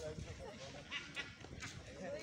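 Faint, indistinct voices of people talking in the background, with no clear words.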